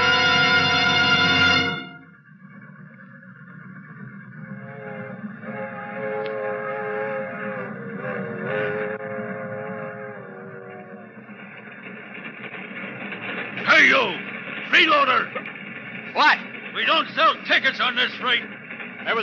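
A loud brass music chord holds and ends about two seconds in. A steady rumble of a rolling train sound effect follows, with a held chord in the middle. A man's voice speaks loudly near the end.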